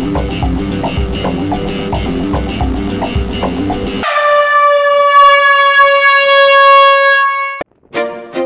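Background rock music with a steady beat, cut off halfway through by one long, loud air-horn blast that sinks slightly in pitch and stops abruptly near the end.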